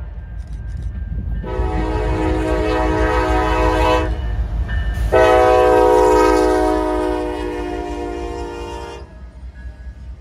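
Norfolk Southern diesel freight locomotive's air horn sounding two long blasts as the lead units pass close by, over the low rumble of the engines and wheels on the rails. The horn stops about a second before the end, leaving the rumble of the passing double-stack container cars.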